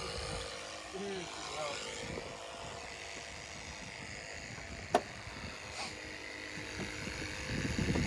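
Low steady outdoor background noise with a single sharp click about five seconds in, as the SUV's driver door is unlatched and opened.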